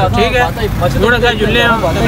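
Speech only: a man talking steadily.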